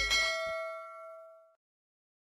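A single bell-like ding sound effect, struck once and ringing out over about a second and a half, as a subscribe-button animation's bell is clicked. The tail of the backing music stops about half a second in.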